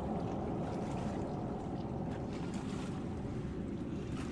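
Steady wind rumble on the microphone over open water, with small waves lapping faintly against a canoe.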